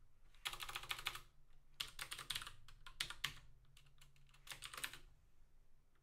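Computer keyboard being typed on in four short bursts of keystrokes, quietly, over a faint steady low hum.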